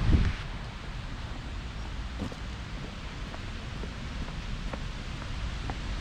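Wind on the microphone: a strong low buffet in the first half-second, then a steady breezy hiss with a low rumble, and a couple of faint taps.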